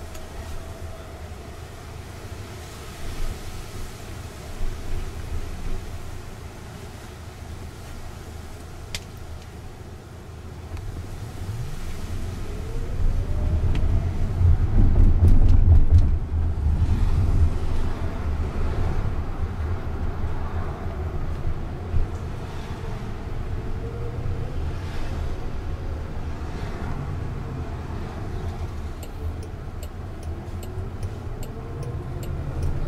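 Cabin sound of a Jaguar I-PACE electric car pulling away from a stop: a faint motor whine rising in pitch as it speeds up, over low road rumble that grows loudest about halfway through and then settles as it cruises.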